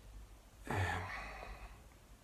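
A man's breathy, sighing "uhh" of hesitation while thinking, starting a little over half a second in and lasting under a second.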